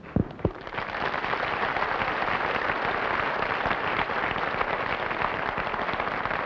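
Studio audience applauding steadily, opening with two sharp thumps.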